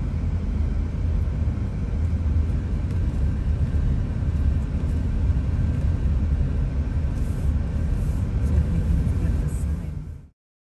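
Steady low rumble of a car driving slowly, heard from inside the car: road and engine noise.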